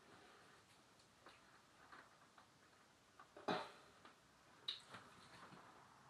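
Mostly near silence with a few faint clicks and one sharper knock about three and a half seconds in: a glass jar being gripped and handled while its lid is twisted by hand. The lid does not give, held tight by the jar's seal being under pressure.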